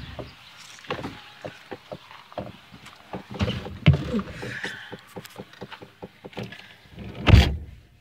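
A person getting into a truck's cab: rustling and scattered knocks from climbing in and handling, then the door shutting with one heavy thump near the end.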